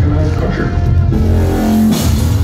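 Loud live industrial band music with heavy bass and drums. In the second half a held pitched note sounds over the band.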